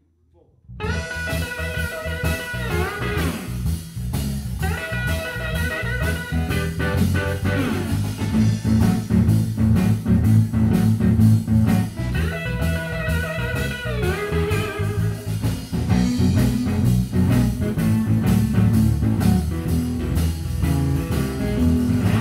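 Live blues band kicking into an instrumental intro about a second in: semi-hollow electric guitar playing lead lines with string bends over electric bass and drum kit.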